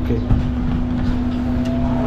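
A machine running with a steady hum: one constant low tone over a continuous low rumble, unchanging throughout.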